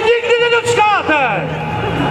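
A man talking in Czech over a public-address loudspeaker, strongest in the first second.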